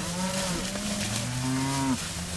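Several cattle mooing in long, overlapping calls; one call cuts off abruptly just before the end.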